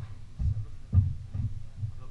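Deep, regular thuds about two a second, each with a short ring in the hall.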